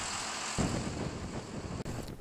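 Farm tractor engine running while it works a front-end loader, with a deeper rumble coming in about half a second in.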